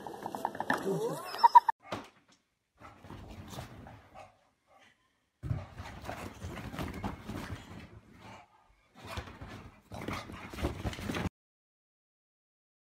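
A dog whining and vocalising in several short spells, with people's voices mixed in.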